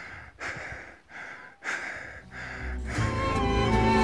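Hard, rapid breathing of a climber labouring uphill in thin air at about 6,000 m, one breath roughly every half second. Music fades in a little past halfway and takes over.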